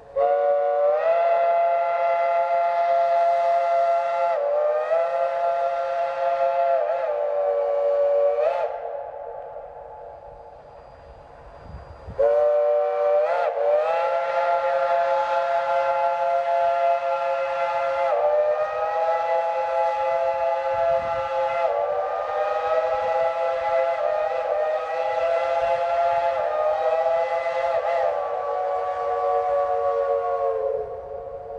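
Steam locomotive's chime whistle blown in two long blasts, several tones sounding together. The first lasts about eight seconds. After a gap of about three seconds a second blast holds for some eighteen seconds, its chord wavering and stepping in pitch as the whistle is worked.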